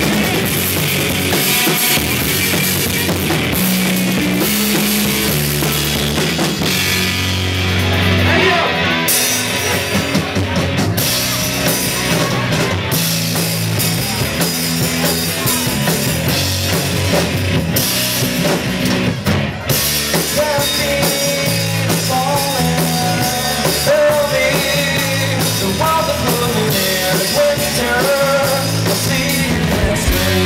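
Live rock band playing an instrumental passage, with no singing: drum kit, electric guitar and bass guitar together, loud and continuous.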